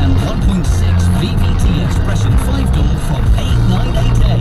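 Music with a steady beat and a bass line playing on a car radio, heard inside the moving car over its road noise.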